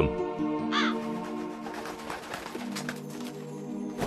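A crow cawing about a second in, over sustained background music.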